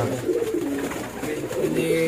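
Racing pigeons cooing: low, drawn-out coos.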